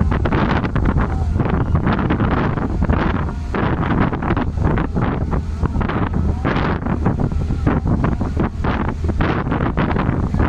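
Strong wind buffeting the microphone in loud, gusty rushes, a heavy low rumble with rapid flurries of hiss.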